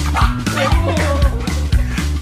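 Two French bulldogs squabbling, giving quick yips and barks at each other, over background music with a steady beat.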